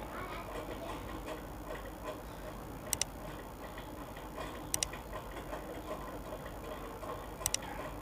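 Three quick double clicks of a computer-mouse click sound effect, the first about three seconds in, over faint handling and scratching of a marker and metal strip on gypsum board.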